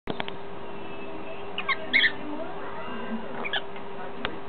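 A lovebird giving short, high chirps: a quick cluster about two seconds in and a briefer pair near the end. A few light clicks at the very start, over a steady low hum.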